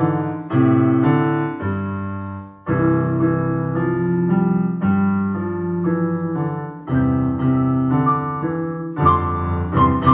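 Portable digital keyboard played four-hands in a piano voice: sustained chords and melody notes changing about every second, with a short break nearly three seconds in.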